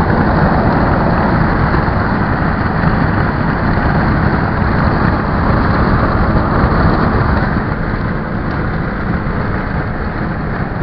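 Steady road noise inside a moving car's cabin at highway speed: tyre and wind noise over a low engine rumble, easing slightly near the end.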